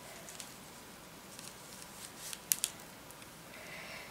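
Faint scratchy rustles and a few short, sharp clicks of a needle and thread being worked through stiff cross-stitch bookmark canvas. The sharpest clicks come about two and a half seconds in.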